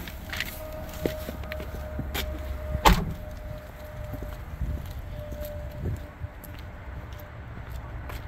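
A low steady hum, then a car door shuts with a single loud thump about three seconds in, and the hum stops with it. A few faint clicks follow.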